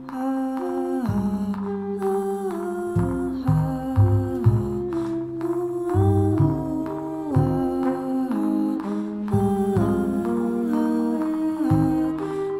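Live jazz ensemble playing a slow passage: long held melody notes in voice and horns over low bass notes that change every second or so.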